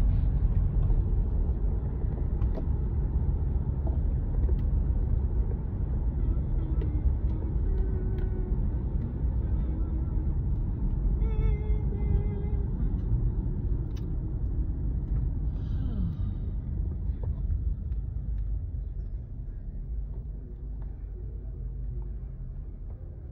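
Car cabin noise while driving: a steady low rumble of tyres and engine, easing off over the last few seconds as the car slows toward a stop.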